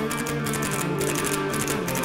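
Electric dombra strummed rapidly and played amplified, a fast run of plucked notes on its two strings.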